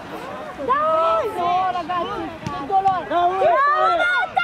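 Football spectators shouting, several voices calling out over one another, louder in the last second.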